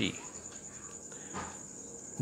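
A cricket's high-pitched pulsing trill, continuous and faint in the background.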